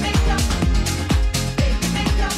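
House music track with a steady four-on-the-floor kick drum, about two beats a second, and hi-hats on top.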